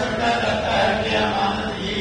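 A man's voice reciting in a drawn-out melodic chant with long held notes, in the manner of Qur'anic recitation quoted within a sermon.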